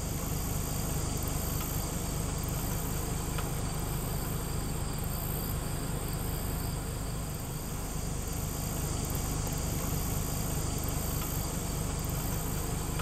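Pickup truck engine idling with a steady low rumble, under high-pitched insect chirping that pulses evenly.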